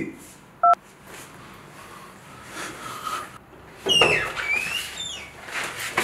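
A single short electronic beep from a mobile phone, about a second in, as a call is ended.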